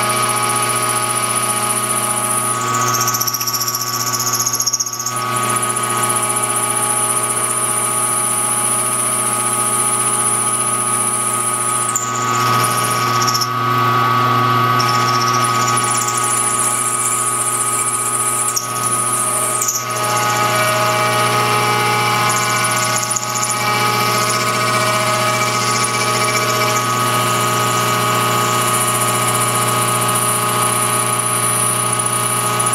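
Milling machine cutting along the side of a metal connecting rod with a disc-shaped cutter. The spindle and cut make a steady whine, and a high-pitched tone breaks off briefly several times.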